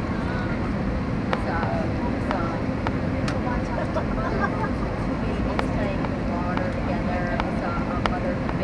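Steady low roar inside the cabin of an Airbus A321 airliner descending on approach, engines and airflow, with indistinct passenger voices underneath and a few scattered clicks.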